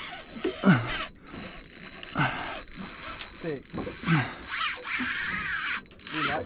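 Fishing reel's drag paying out line in a continuous ratcheting buzz as a big fish makes a long run against light 15 lb line. Short vocal exclamations come over it.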